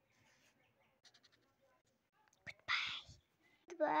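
Faint ticking of a felt-tip marker on paper, then a short, loud breathy hiss about three seconds in.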